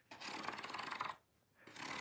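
A catnip banana toy rubbed along the ridged edge of a corrugated cardboard accordion cat bed: a dry rasping rub of fine rapid ticks lasting about a second, starting again near the end.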